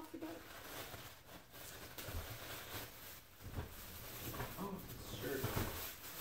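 Tissue paper rustling and crinkling as a present is unwrapped, with a brief voice near the end.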